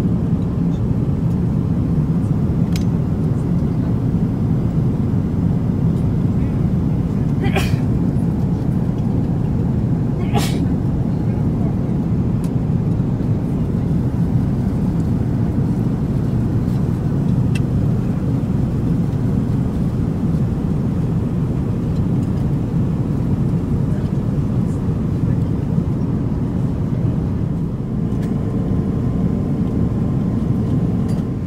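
Steady low cabin noise of an Airbus A350-900 airliner in flight, from engines and airflow, at an even level. Two brief sharp clinks break through about eight and ten seconds in.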